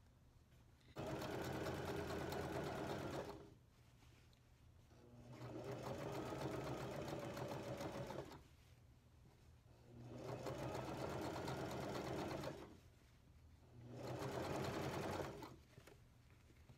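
Elna domestic sewing machine stitching a pin tuck through folded denim in four separate runs of a few seconds each, stopping briefly between runs; the second and third runs speed up gradually at the start.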